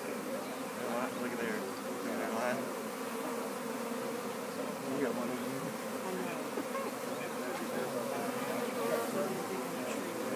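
A swarm of honey bees buzzing close by: a steady hum of many bees at once, their overlapping pitches wavering but the overall level even throughout.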